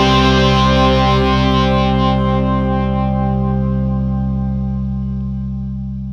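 Soundtrack music ending on one held, distorted electric guitar chord that rings out and slowly fades.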